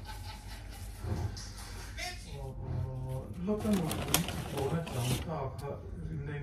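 Speech: a person's voice talking, with some drawn-out, low hummed syllables.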